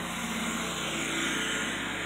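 A steady low mechanical hum under even background noise, with no distinct events.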